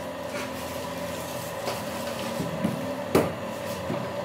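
Heavy carved rosewood daybed parts being handled and fitted together, with a single sharp wooden knock about three seconds in as a piece is set into place.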